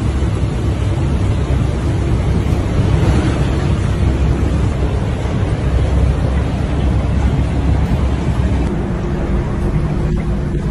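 Torrential rain and running floodwater with wind buffeting the microphone: a steady, loud rush, heaviest in the low end. A faint low hum joins near the end.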